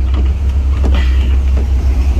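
Pickup truck driving, heard from its open cargo bed: a loud, steady low rumble of engine, road and wind, with a few faint knocks.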